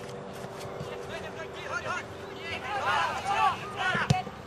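Voices of footballers and onlookers shouting and calling across the ground, unintelligible, coming thicker and louder from about halfway in, over a steady faint hum.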